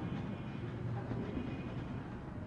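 Faint strokes of a marker writing on a whiteboard over a steady low hum of room noise.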